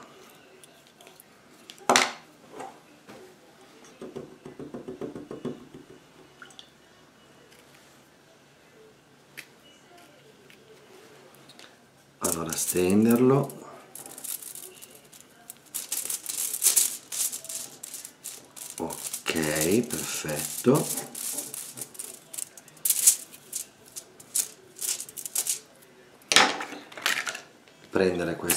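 Aluminium foil crinkling and crackling in many short bursts as hands spread acrylic paint across it, busiest in the second half.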